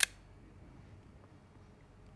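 A single sharp click right at the start, then faint steady low background noise.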